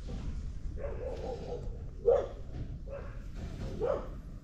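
Pit bull puppies making several short, soft vocal sounds while they lie together chewing a cord, the loudest about two seconds in.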